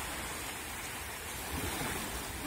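Small waves of a calm sea breaking and washing up on a sandy shore: a steady, even rush of surf, with some wind on the microphone.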